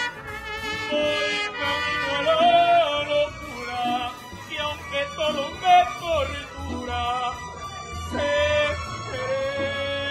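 Live mariachi music: a male mariachi singer singing in full voice, with long held notes.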